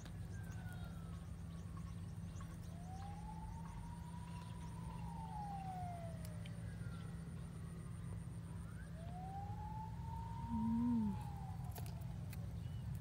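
Siren wailing faintly in slow rises and falls, two long sweeps of about four seconds each, over a steady low rumble. A short low hum near the end is the loudest sound.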